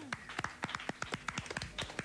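Scattered hand clapping from a small studio audience at the end of a song, a quick uneven patter of claps. In the first instant, the song's last held note slides steeply down in pitch and dies away.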